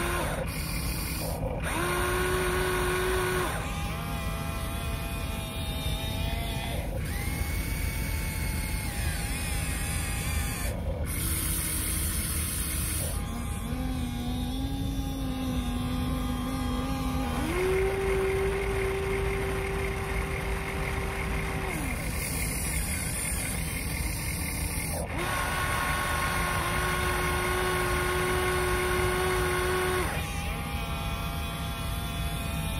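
Huina RC excavator's small electric motors whining as the boom, arm and bucket move, the pitch shifting in steps every few seconds as different functions run and stop.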